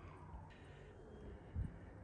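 Quiet background with a faint steady low hum and a single soft low thump about one and a half seconds in.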